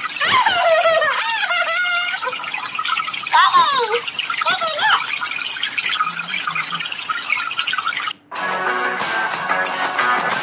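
High-pitched voices and laughter. After a brief drop-out about eight seconds in, they give way to strummed guitar music.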